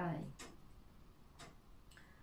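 A clock ticking faintly, two sharp ticks a second apart, with the end of a woman's spoken word just before them.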